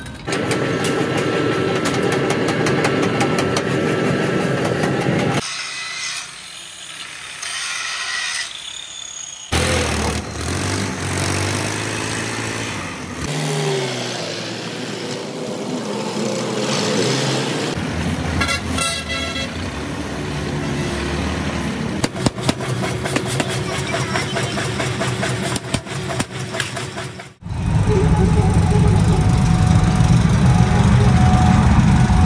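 A series of short clips cut one after another: a forging press working metal with dense clatter, then a tractor engine and road traffic, ending on a loud low rumble after a sudden cut.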